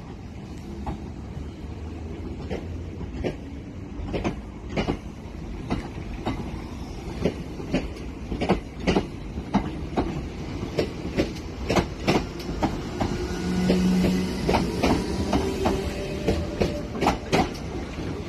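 Southern Class 455 electric multiple unit moving off along a platform: a steady low rumble with the wheels clicking over rail joints, the clicks coming quicker as the train gathers speed. A short low hum comes in about two-thirds of the way through.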